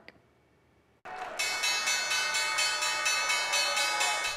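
The New York Stock Exchange closing bell ringing: a steady, continuous electric ring that starts about a second in after a brief silence, with clapping from the people on the bell podium underneath.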